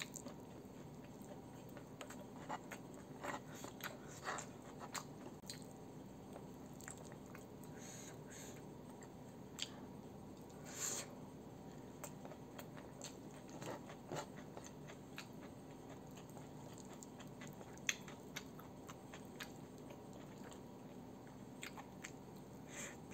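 Close-miked chewing of hand-fed mouthfuls of rice and pecel (vegetables in peanut sauce), with scattered short wet clicks and small crunches. A faint steady hum runs underneath.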